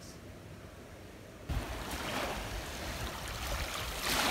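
Small sea waves washing onto a sandy beach, with wind rumbling on the microphone, starting suddenly about a second and a half in after a quieter moment.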